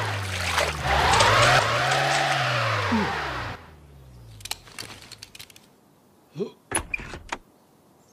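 Red Morris Minor convertible's engine revving hard, the revs climbing and then falling, while its wheels spin and spray mud: the car is stuck in the mud. The engine cuts out about three and a half seconds in, followed by a few light knocks and a brief voice.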